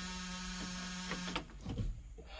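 A steady low electrical hum with a buzzing edge, heard in a bus with the key on and the engine off. It cuts off about a second and a half in, and a few light clicks follow.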